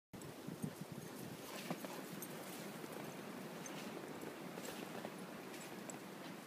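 Faint, irregular footsteps crunching in snow over a steady hiss, with two louder thumps in the first two seconds.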